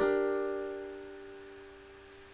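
A G minor chord on a digital piano, voiced with D at the bottom and B-flat on top, struck once and left to ring, fading steadily away.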